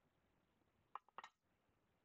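Near silence broken by a quick cluster of three or four light clicks about a second in, as a clear plastic card case and a stack of cards are handled.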